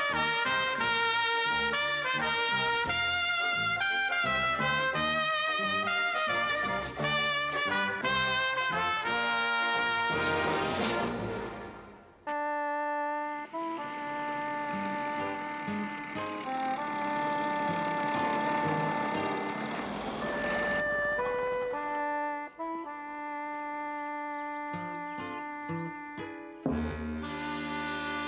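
Opening theme music of a TV series. A busy ensemble passage with many quick notes plays for about ten seconds, swells and fades, and then gives way to slower, held notes.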